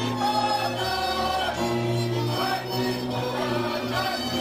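Slovak folk music: a group of voices singing together over a small string band with fiddle and double bass.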